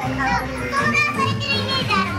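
Background music with a steady bass line under overlapping chatter of a crowd.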